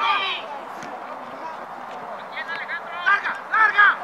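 Voices shouting across an outdoor soccer field during a youth match: a loud call at the very start, then a run of high-pitched shouts about two and a half to four seconds in, over a low background murmur.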